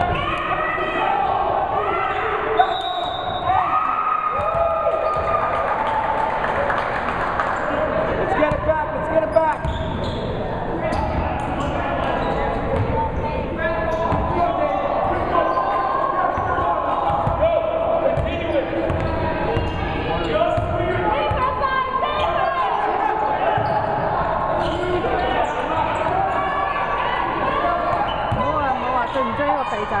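Indoor basketball game: the ball bouncing on the hardwood gym floor, with players and people courtside calling out throughout, echoing in the large hall.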